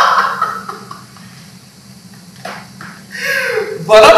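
An actor's loud declamation breaks off and fades in the first second, leaving a pause with a short sound about two and a half seconds in. A voice comes back about three seconds in and swells into loud speech again at the end.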